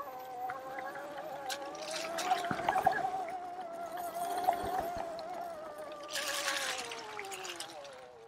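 Oset 24R electric trials bike's motor whining steadily as it rides over rough grass, the pitch sinking over the last couple of seconds as the bike slows. A few short knocks come from the bike going over bumps.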